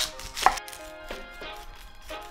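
Chef's knife cutting through the end of an onion and striking a wooden end-grain cutting board, with the sharpest chop about half a second in.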